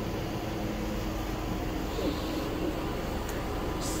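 Steady background hum and hiss of lab machinery and ventilation, with no distinct events.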